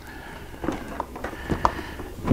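A few light clicks and knocks as the batwing fairing is handled and settled into place by hand, about four short taps spread over the two seconds.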